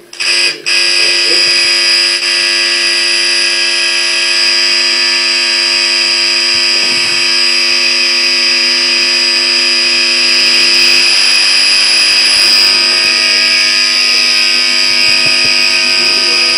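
A loud, steady electronic buzzing tone, like an alarm or buzzer, made of several pitches at once. It starts just as the speech breaks off and holds unchanged without pulsing.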